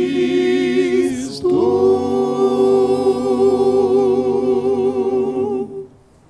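Male vocal group singing a cappella through microphones: a sustained chord, a quick change about a second and a half in, then a long held chord with vibrato that stops shortly before the end.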